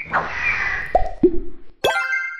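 Cartoon sound effects for an animated logo intro: a falling whoosh, two quick dropping 'bloop' plops about a second in, then a bright chime struck near the end that rings on.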